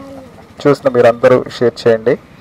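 A man talking in short phrases, in a language the recogniser could not transcribe.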